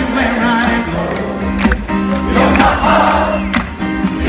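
A concert audience sings along together to a strummed acoustic guitar.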